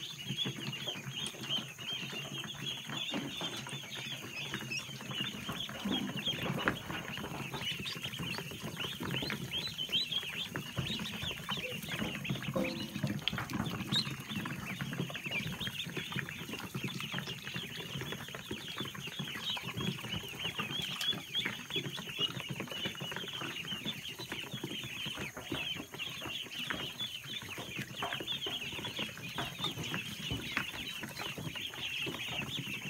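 A large flock of Khaki Campbell ducklings peeping all at once: a dense, unbroken chorus of many short, high-pitched peeps overlapping.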